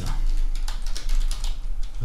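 Computer keyboard being typed on: a quick, dense run of keystrokes.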